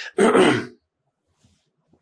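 A man clears his throat once, a short burst about a quarter of a second in.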